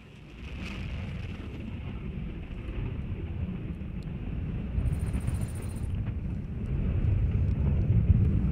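Low rumble of the Minotaur IV's first-stage solid rocket motor during ascent, growing steadily louder.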